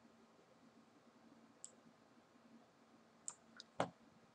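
Near silence, broken by a few computer mouse clicks: a faint one early and three close together near the end, the last the loudest.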